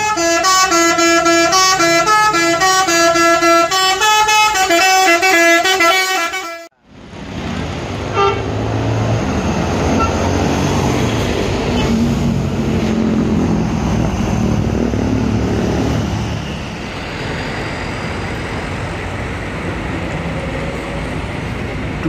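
A tune of held, stepped tones plays and cuts off abruptly about seven seconds in. Then a large coach bus drives past on the road, its engine running and tyres on the tarmac, easing off after about sixteen seconds into a steadier, quieter road hum.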